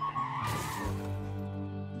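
Background music with a car's tyres skidding under hard braking: a squeal and a burst of hiss that starts about half a second in and fades within a second.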